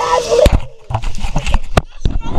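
A high voice crying out briefly at the start, then a run of irregular sharp knocks and thumps from the body-worn camera being jostled and bumped during a struggle.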